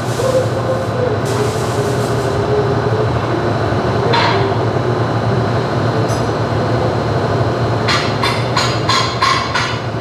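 Electric drill running under load, boring holes through a steel brake rotor; the motor's pitch sags a little over the first few seconds, and a rapid scatter of sharp clicks comes near the end.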